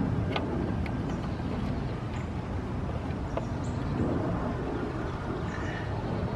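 A flathead screwdriver loosening the lower drain screw on an outboard's gearcase, heard as a few faint clicks over a steady low background rumble.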